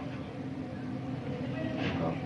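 Steady low background rumble with a hum, without breaks or distinct knocks.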